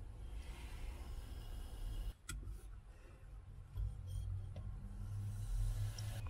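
Cola poured from aluminium cans into plastic cups, fizzing faintly over a low steady rumble, with one sharp click about two seconds in.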